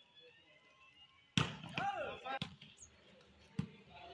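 A volleyball struck by hands during a rally: three sharp smacks about a second apart, the first the loudest. A man's short shout comes right after the first hit.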